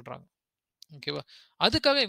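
Speech: a teacher lecturing in Tamil and English, broken by a half-second pause with one faint click in it.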